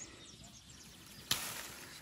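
A lychee being snapped off its stem by hand: one sharp snap a little past halfway, followed by a brief rustle of leaves and twigs.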